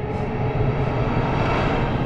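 A low cinematic rumble swells in as a trailer sound effect, with faint held music tones beneath it.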